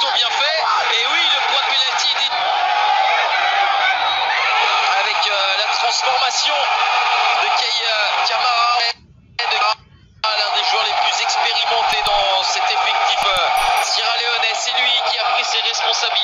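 Sound of a televised football match: voices over a continuous dense background, with the sound briefly cutting out twice just past the middle.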